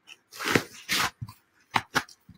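A foam pool noodle being handled and pushed onto the edge of a paper poster: a few short rubbing and rustling scuffs, then two sharp taps near the end.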